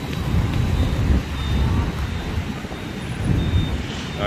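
Low, uneven rumble of dense city traffic: cars and motorbikes passing close by.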